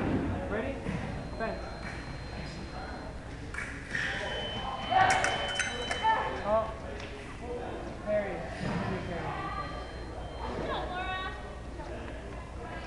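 Electric fencing scoring machine giving a steady high beep for about two seconds, starting about four seconds in, to signal a touch. A quick clatter of fencing blades comes in the middle of it. Voices chatter in an echoing hall throughout.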